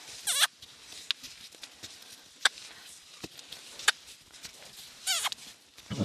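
Two short animal calls, each falling in pitch, one just after the start and one near the end, with a few faint sharp clicks between them.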